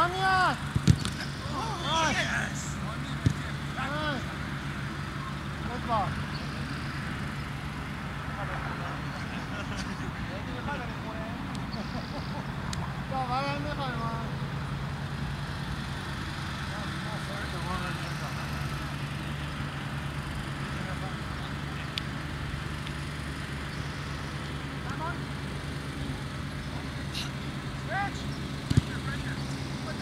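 Soccer players' shouts and calls across an outdoor pitch, loudest in the first couple of seconds and again about halfway through, with a few sharp knocks. A steady low hum runs underneath.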